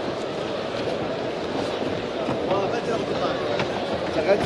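Steady din of a busy exhibition-hall crowd: many people talking at once in the background, with no single voice standing out.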